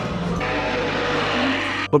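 Film soundtrack music in a dense, noisy mix over a steady low drone. It changes a little under half a second in and cuts off suddenly just before the end.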